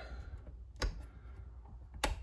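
Toggle handles of a manual transfer switch being flipped from line to generator supply: two sharp clicks, one just under a second in and one near the end.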